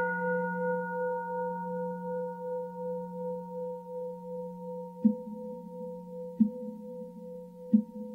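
A bell struck once, its tone ringing on with several overtones and slowly fading. From about five seconds in, three short knocks come at an even pace, about 1.4 seconds apart.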